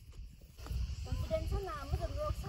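Wind buffeting the microphone as a low rumble, with people's voices talking from about a third of the way in.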